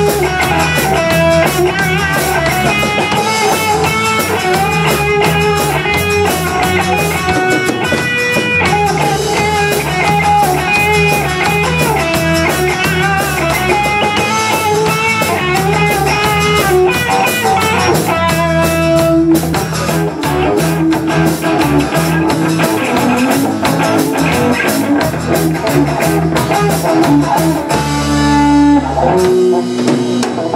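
A live band playing an instrumental passage: electric guitar in front over a drum kit and keyboard, with a steady beat. Near the end a quick run of falling notes leads into the next section.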